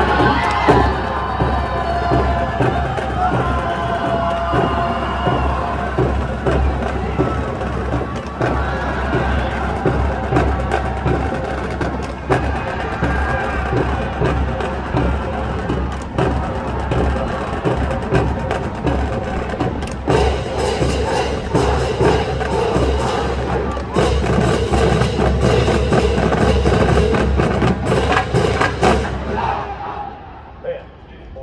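Marching band drumline playing a run-in cadence, with shouting and cheering in the first few seconds. The drumming turns fuller and louder about two-thirds of the way through, then stops sharply just before the end.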